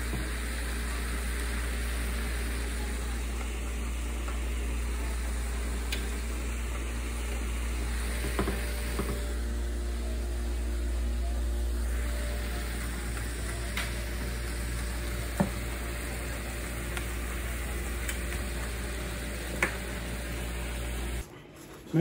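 Pot of beet soup at a rolling boil on an electric stovetop: steady bubbling and sizzling with a few light clicks, over a constant low hum. The sound cuts off abruptly shortly before the end.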